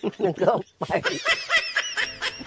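A man laughing, a run of short chuckles mixed with a few spoken words.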